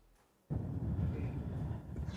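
Dead silence for about half a second at an edit cut, then low, steady background noise of a press-conference room with no clear speech.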